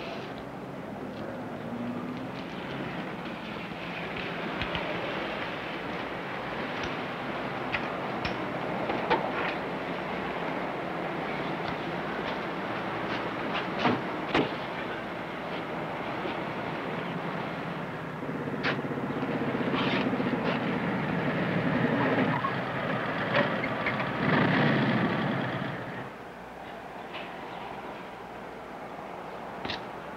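Motorcycle engines running in a steady rumble with scattered clicks, growing louder over the later part and dropping away suddenly near the end.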